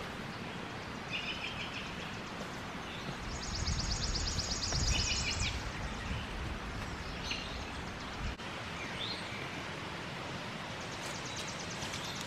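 Outdoor ambience with birds calling over a steady background hiss: a few short chirps, then a fast, high, even trill for about two seconds, then a couple of brief rising notes.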